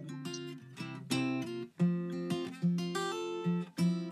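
Background music: acoustic guitar playing a run of plucked notes, several a second.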